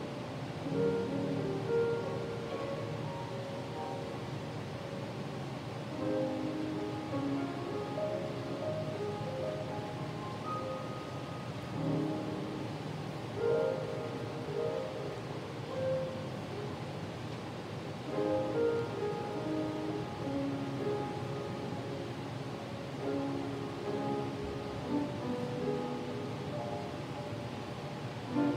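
Slow, soft instrumental keyboard music: held notes in gentle phrases that swell about every six seconds.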